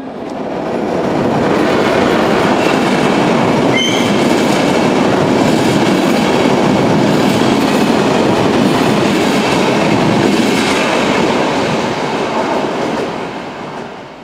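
Passenger train passing at speed: a loud, steady rush of wheels on rails that sets in suddenly and fades over the last couple of seconds as the last coaches go by. A brief high squeal sounds about four seconds in.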